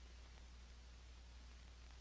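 Near silence: a steady low hum and faint hiss of the old film soundtrack.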